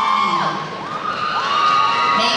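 Audience members whooping and cheering for a graduate, with high drawn-out 'woo' calls that rise in pitch and are held over a crowd. One whoop fades out early, and two more start rising about a second in.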